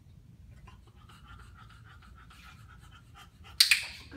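A bulldog panting in quick, even breaths with a thin whistle running through them. About three and a half seconds in comes one sharp, loud click from a dog-training clicker, marking the moment she puts her front feet on the platform.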